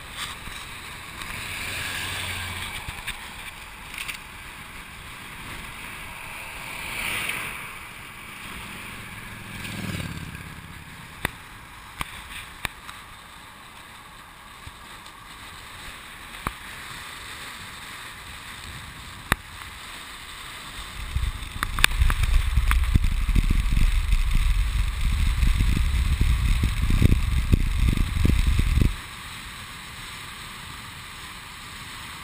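Wind rushing over a bike-mounted camera's microphone while a bicycle coasts downhill: a steady hiss with a few soft swells and scattered sharp clicks. From about 21 s to 29 s heavy low wind buffeting hits the microphone, then cuts off suddenly.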